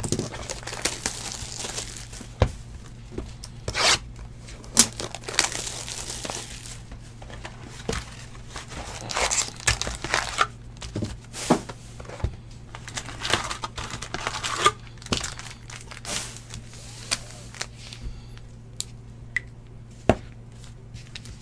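Hands opening a cardboard hobby box of trading cards and pulling out its foil-wrapped packs: irregular crinkling and rustling of wrappers and cardboard, with scattered sharp clicks and knocks.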